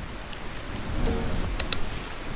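Steady rushing water noise, like waves or rain, with faint music under it and two quick sharp clicks near the end.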